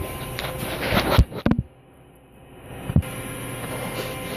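Handling noise from a phone being turned around in the hand: rubbing and sharp knocks on the microphone, the loudest about a second in and again at three seconds, with the sound briefly dropping almost out between them, over a low steady hum.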